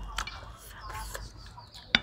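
Chickens clucking in short calls, with a sharp click just before the end.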